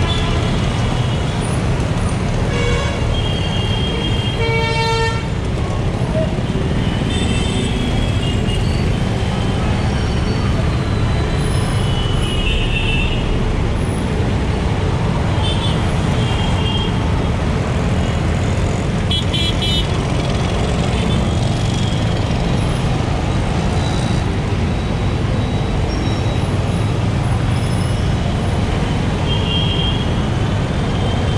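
Dense city traffic heard from a moving motorcycle: a steady low rumble of engines, with short horn toots from surrounding vehicles again and again, and one clearer, more pitched horn blast about five seconds in.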